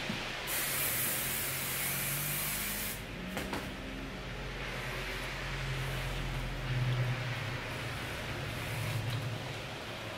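Aerosol hairspray (Sebastian Re-Shaper) sprayed in a long hiss for the first few seconds. Softer rustling follows as a brush is drawn up through the hair.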